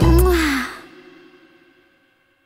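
The final chord of a pop Christmas song: a bass-heavy closing hit with a short vocal note that slides up and back down, then the music rings out and fades away over about a second and a half.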